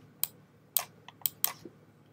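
Four short, sharp clicks at uneven intervals from computer controls, keys or a mouse, as the on-screen chart is moved.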